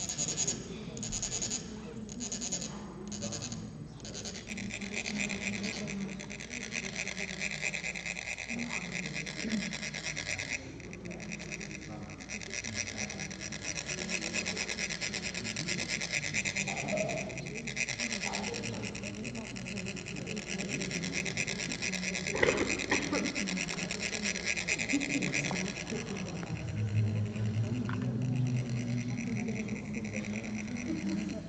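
Chak-purs rasping: a metal rod rubbed along the ridged shafts of the metal sand funnels, making them vibrate so that coloured sand trickles out onto a sand mandala. A few short separate strokes come first, then a long, nearly continuous grating rasp that thins out briefly about ten seconds in and again near the end.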